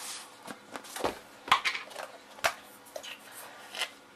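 Salt being shaken from a plastic tub over a plastic bowl of cut potatoes: a handful of irregular short taps and rattles with light rustling between them.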